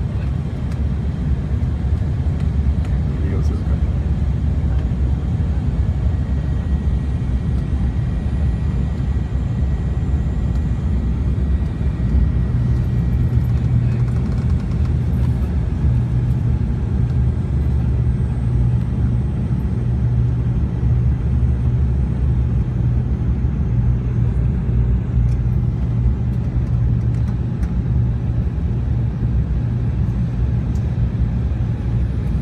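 Steady low rumble inside the passenger cabin of a jet airliner on its descent: engine and airflow noise. A deep hum in it grows stronger about halfway through.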